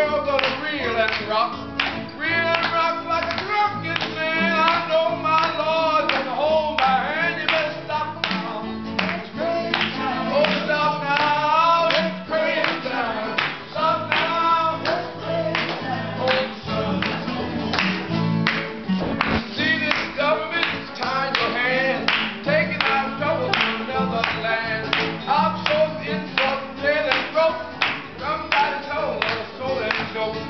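Live acoustic guitars and an electric bass playing an upbeat song, with hands clapping steadily on the beat, about twice a second, and voices singing along.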